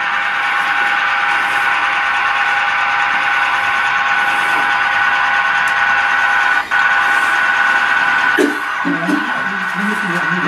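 HO scale model diesel locomotive running along the layout's track: a steady hum made of several held tones, with a brief dropout about two-thirds of the way through.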